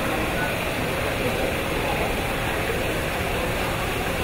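Steady rushing noise of flowing water in a polar bear's pool, with a faint murmur of voices under it.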